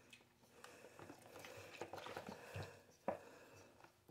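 Faint soft splashing and lapping of soapy water in a metal basin as hands wash a baby squirrel monkey, with one short sharp click a little after three seconds in.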